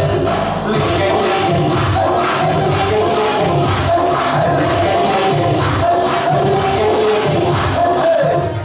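Recorded dance music with a steady beat and a singing voice, played loud over a PA loudspeaker for a dance performance.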